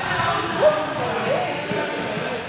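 Indistinct voices of a group of students echoing in a large sports hall, with two short rising calls. A few light knocks and thuds on the hall floor come through under the voices.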